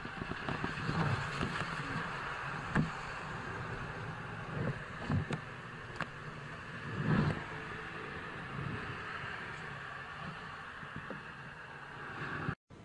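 Steady street traffic noise heard through a motorcyclist's helmet camera, with several short knocks and bumps as the fallen motorcycle is handled and lifted.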